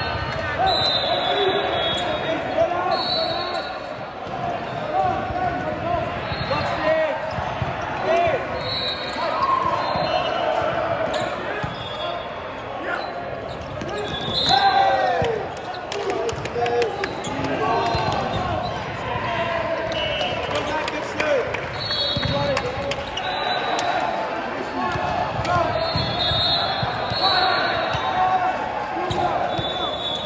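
Indoor volleyball game in a reverberant sports hall: unintelligible calls and chatter from players and spectators, with short high squeaks of sneakers on the court and sharp thuds of the volleyball being bounced and hit.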